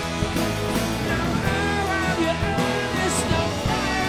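Rock band playing live, with a drum kit keeping a steady beat under electric guitars.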